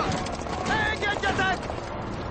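Horse hooves clopping as a horse is ridden at a walk, with a man's voice calling out over them for about a second in the middle.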